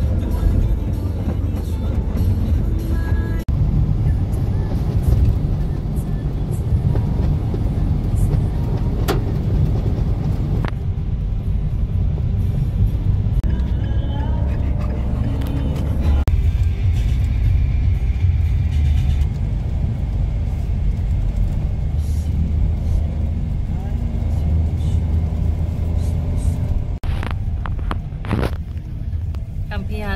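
Steady low road and engine rumble inside a moving car's cabin, heard from the back seat. The sound shifts abruptly a few times as the footage cuts between drives.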